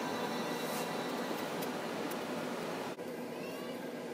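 Steady background hiss with no distinct sound event, with a brief dropout about three seconds in.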